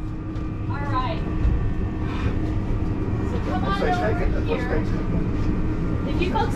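Indistinct voices of people talking, about a second in and again in the second half, over a steady low hum.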